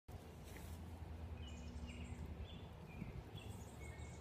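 Small birds chirping: a string of short, high chirps about two a second, starting about a second and a half in, over a low steady rumble.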